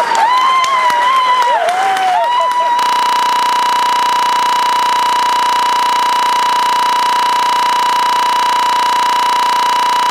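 A young performer's high singing voice gliding up and down around one high pitch, with scattered claps and crowd noise, for about three seconds. Then the sound cuts abruptly to a single unwavering tone at about the same pitch, which holds steady and unchanged for the rest.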